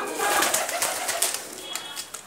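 Pigeons in a cardboard-and-wood loft: a burst of rustling and scraping through the first second and a half, fading after, with faint pigeon cooing.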